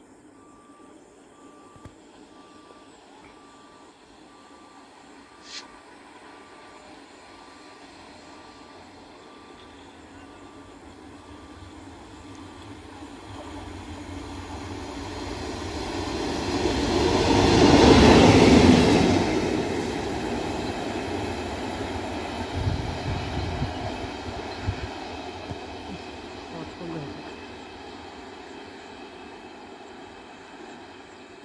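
Indian Railways WAP-7 electric locomotive approaching along the track, growing steadily louder to its pass at the loudest point about eighteen seconds in, then fading as it runs away. A few knocks of wheels over the rail joints follow shortly after the pass.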